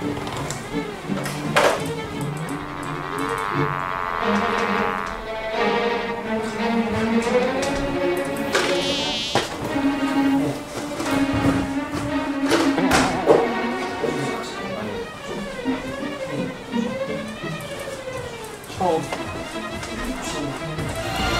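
A large fly buzzing in short spells, its pitch wavering, over background music.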